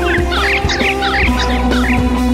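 A rock band playing, with a rapid run of short squawks from a handheld bird call blown over the music, each a quick slide up or down in pitch.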